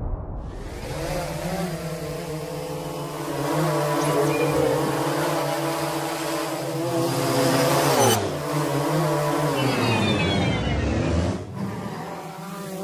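Quadcopter drone's motors and propellers humming at a steady pitch. The pitch dips briefly about eight seconds in and slides down near the end as the sound fades out.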